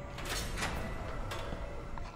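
A brief scraping rush of noise a quarter second in, then a short sharp knock about a second later, over a low rumble.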